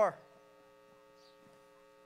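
Faint, steady electrical mains hum from the sound system, a low buzz of several steady tones.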